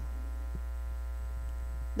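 Steady electrical mains hum picked up by the recording: a low, unchanging drone with a faint buzz of evenly spaced overtones above it.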